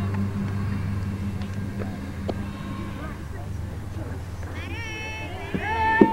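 Youth baseball field ambience. A steady low hum stops near the end, a few faint knocks sound, and high-pitched children's voices call out in the last second or so.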